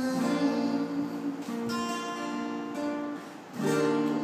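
Two acoustic guitars playing held, ringing chords together in an instrumental passage. Near the end the sound swells again as a saxophone comes back in.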